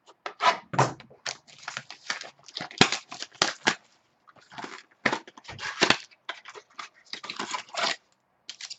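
Trading card packaging being handled and torn open: plastic wrapper crinkling and tearing, and cardboard rustling, in quick irregular bursts.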